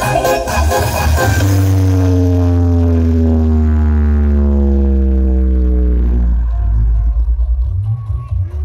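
Loud music from a carnival sound-system speaker stack: a heavy, sustained bass under a long tone that glides slowly downward for several seconds. Near the end the glide stops and the bass turns choppy and stuttering.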